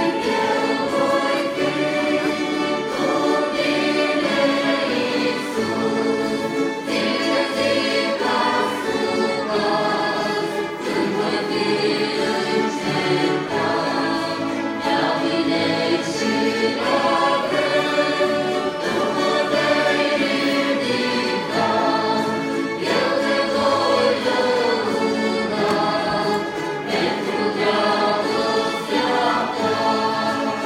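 Church string ensemble of violins, mandolins and guitar playing a slow hymn in sustained phrases, with a choir of voices singing along.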